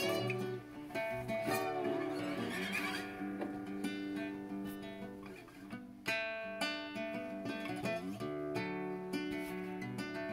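Acoustic guitar fingerpicked in a Travis-picking pattern and played slide-style with a Corona beer bottle on the strings, notes gliding up and down in pitch, most clearly in the first three seconds.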